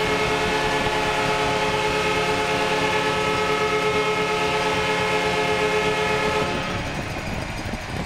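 Arena goal horn sounding one long steady blast over a cheering crowd, fading out about six and a half seconds in; the horn signals a home-team goal.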